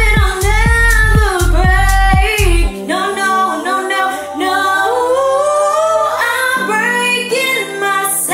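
A woman singing a pop song over a karaoke backing track. The drums and bass drop out about three seconds in, leaving the voice over lighter sustained accompaniment.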